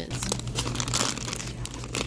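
Clear plastic candy packaging crinkling and crackling irregularly as a bag of lollipops is handled, over a low steady hum.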